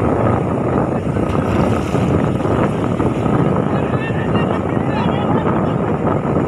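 Steady, dense noise of wind on the microphone over breaking surf. Men's voices call out faintly about four to five seconds in.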